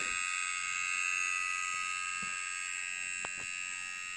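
A 1999 Maxtor 3.5-inch IDE hard drive giving off a steady high-pitched whine made of several tones, with two faint ticks partway through. The drive is struggling: it is at 100% usage while reading less than a kilobit a second.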